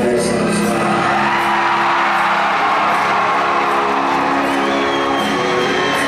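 Live rock band playing sustained chords through an arena sound system, with a crowd cheering and whooping over it.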